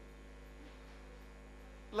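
Steady low electrical hum through the microphone and PA system in a pause between words; a man's voice starts again right at the end.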